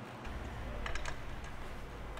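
A few light clicks of a hand tool working the stock 6.0L Power Stroke fan clutch off its fan blade, grouped about a second in, over a low steady hum.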